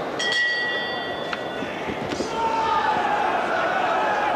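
Boxing ring bell struck once, ringing for about a second to signal the start of the round, over a steady arena crowd murmur.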